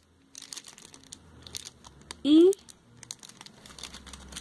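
Plastic packaging crinkling irregularly as cosmetics are handled, a run of small crackles. Halfway through, a short rising voice sound is the loudest thing.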